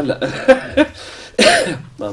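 A man coughing: a few short bursts, then one loud, sharp cough about a second and a half in.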